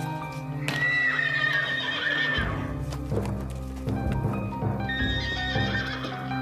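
A horse whinnying: one long call starting about a second in, and a second call near the end, over background music with sustained tones.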